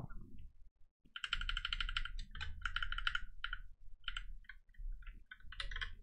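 Typing on a computer keyboard: quick runs of keystrokes in bursts with short pauses, starting about a second in.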